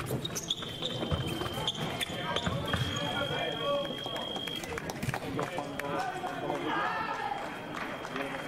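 Electric fencing scoring machine sounding one steady high-pitched tone for about four seconds, signalling that a touch has registered, after a few sharp clicks of foil blades and footwork on the piste. Voices in the hall follow.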